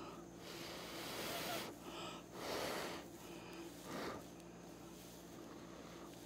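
Breath blown by mouth in puffs across wet acrylic paint on a canvas, pushing a small patch of white paint over the colours. There are three puffs: a long one about half a second in, a shorter one at about two and a half seconds, and a brief one about four seconds in.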